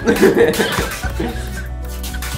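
Laughter in about the first second, over background music with a steady low bass note.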